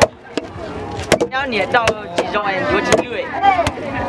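Wooden mallets pounding steamed sticky rice in a wooden trough for rice cakes: about eight sharp, irregularly spaced knocks, with voices of onlookers in the middle.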